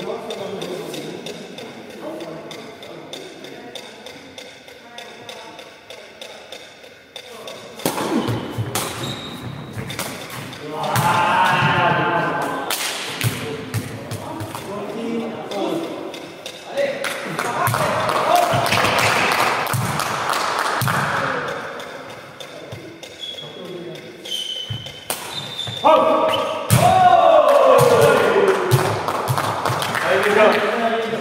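Sepak takraw ball being kicked and hit, with sharp thuds scattered through the rally, and players' voices calling and shouting in loud bursts, echoing in a large sports hall.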